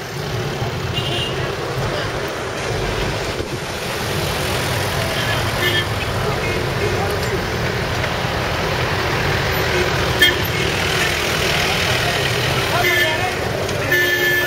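Busy street traffic: a steady mix of motorbike and small-vehicle engines passing, with a few short horn toots and people's voices.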